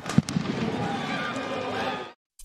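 Field-level celebration noise: many voices shouting and cheering together, with a few sharp pops in the first half second.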